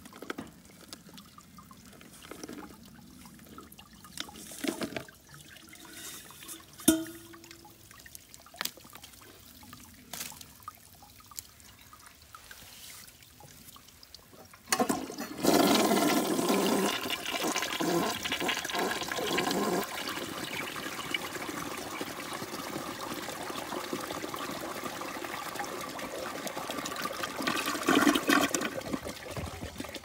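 A 1975 American Standard Cadet toilet flushing a bowl loaded with wood ash: a sudden rush of water about halfway through, loudest for the first few seconds, then a steady run of water to the end. Before the flush, light scrapes and taps of ash being tipped from a metal can into the bowl. The flush carries away nearly all of the ash.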